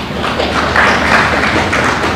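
Audience applauding, a dense patter of clapping that builds about half a second in.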